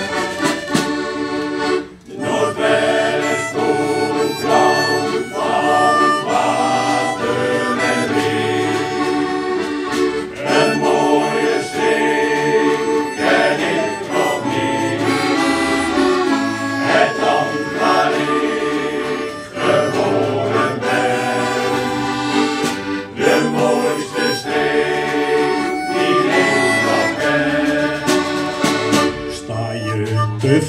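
Accordion and harmonica playing an instrumental passage of a choir song, with no voices.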